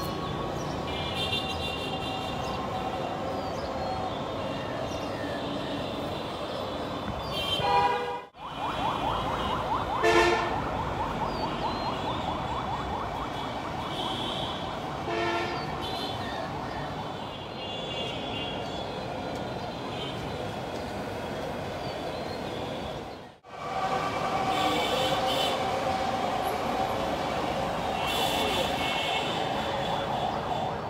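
Urban traffic background with sustained horn-like tones, dropping out abruptly twice, about a quarter and three quarters of the way through.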